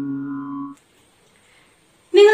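A man's voice holding one long, steady sung note that cuts off abruptly just under a second in, followed by near silence.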